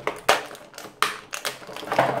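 Clear plastic blister packaging crackling and popping as hands press and pull it to free an action figure: a string of sharp cracks with rustling between them, the loudest about a second in.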